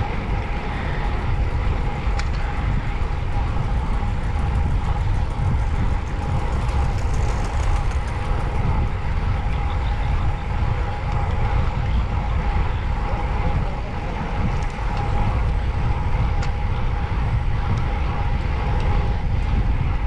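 Wind buffeting the microphone of a handlebar-mounted camera on a road bike in motion, with the rush of tyres rolling on concrete: a loud, steady, fluttering rumble, with a faint steady tone underneath.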